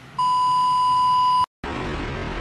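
A single steady electronic beep, one unwavering high-pitched tone lasting just over a second, cut off abruptly: an edited-in bleep sound effect over a transition card.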